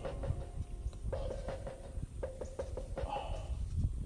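Faint, scattered light clicks and rubbing from fingers handling a split persimmon seed close to the microphone.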